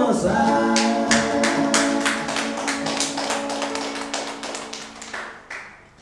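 The end of a live song with electric guitar and voice: a final note is held and fades away while steady, evenly spaced taps keep time at about three a second. The music dies out just before the end.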